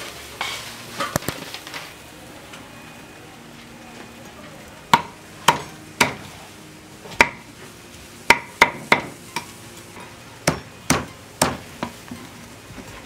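Heavy cleaver chopping roast suckling-pig crackling on a round wooden chopping block. About a dozen sharp, irregularly spaced knocks come from about five seconds in, after a quieter start.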